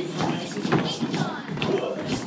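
Many children's voices chattering at once, mixed with thumps of feet on a wooden hall floor.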